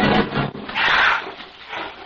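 Radio-drama sound effect of the escaped condor: one rasping, hissing bird cry about a second in, as a dramatic music cue fades out.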